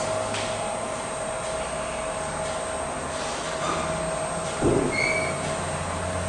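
Marker writing on a whiteboard over a steady low hum and hiss of room noise, with a couple of short, faint squeaks from the marker tip in the second half.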